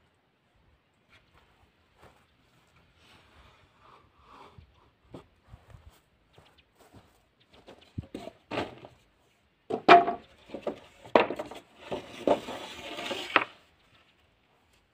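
Wooden fence boards clattering and knocking against each other as they are handled and lifted from a stack. There are a few sharp, irregular knocks in the second half, the loudest about ten seconds in.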